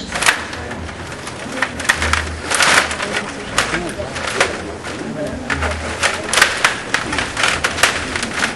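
Stiga rod hockey game in play: rapid, irregular clicks and knocks of the puck and the plastic players on their rods, some close together and some a fraction of a second apart.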